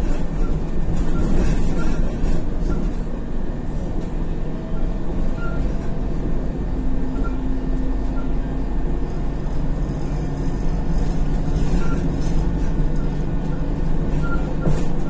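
Steady engine and road noise heard from inside a moving Isuzu Novociti Life city bus, with faint steady tones from the drivetrain over the low rumble.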